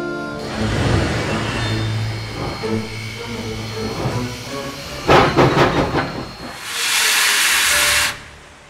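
Steam locomotive working hard: heavy chuffing over a low hum, a quick cluster of sharp exhaust beats about five seconds in, then a loud, steady hiss of escaping steam near the end.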